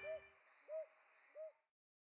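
A bird gives three short, faint hoots about two-thirds of a second apart, each rising and then falling in pitch, as the last held note of the theme music dies away in the first half-second. A faint hiss under the hoots stops abruptly near the end.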